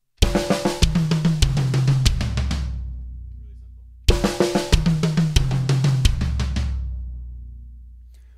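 Acoustic drum kit playing a slow metal fill twice: even 16th-note strokes moving from snare down through high, mid and low toms, stepping lower in pitch, with the bass drum on each quarter note. Each pass ends on a last hit that rings out and fades for about two seconds.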